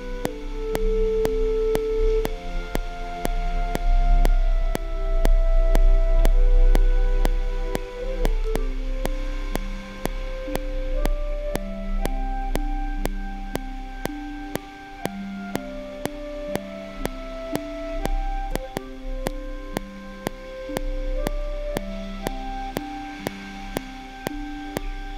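A slow orchestral line played by sampled instruments from a laptop, its held notes changing about once a second, over a steady metronome click about twice a second. A low rumble runs underneath.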